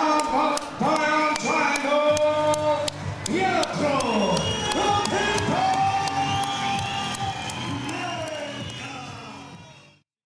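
A ring announcer calls out the winner's name in a long, drawn-out shout over music with a steady beat, then the crowd cheers and whoops. The sound fades out near the end.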